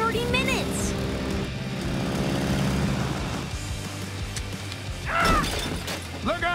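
Cartoon soundtrack: background music with a character's short wordless vocal sounds, one in the first second and a rising-then-falling one about five seconds in.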